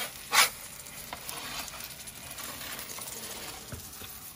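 Wood-fired brick oven's fire hissing and crackling steadily, with one short, loud scrape about half a second in as the metal pizza peel moves across the oven's stone floor.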